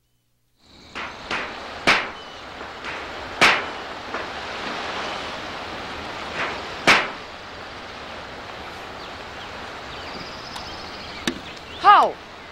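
After a brief silence, sharp single hammer knocks come at irregular intervals over a steady outdoor hiss, the loudest near two, three and a half and seven seconds in.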